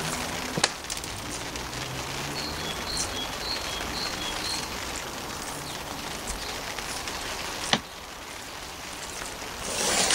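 Water sprinkling from a plastic bottle fitted with a watering rose onto compost in small seed pots, a steady patter. Two sharp clicks break it, the louder one near the end, after which the patter is quieter.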